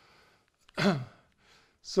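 A man's short, breathy voiced exhalation, like a sigh, with a falling pitch about a second in, from a lecturer who has just coughed.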